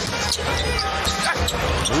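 A basketball dribbled on a hardwood court, a run of bounces, over the low steady noise of an arena crowd.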